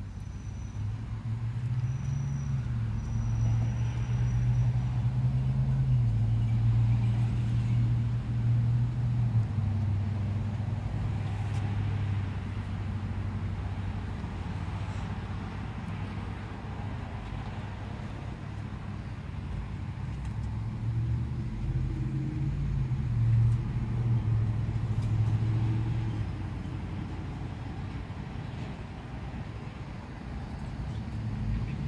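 A low, engine-like hum that steps up and down in pitch. It is strongest for the first ten seconds and again about three quarters of the way through.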